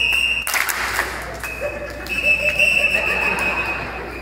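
A high, steady whistle tone blown in long held blasts, the longest lasting about two seconds in the second half, with a short rush of noise about half a second in.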